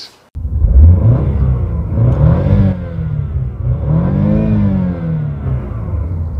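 A car engine revved while parked in Park, starting abruptly and rising and falling in pitch twice. The car is a BMW.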